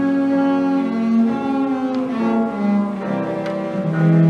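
Cello played with the bow: a slow phrase of long, sustained notes that steps downward in pitch in the second half, settling on a lower note near the end.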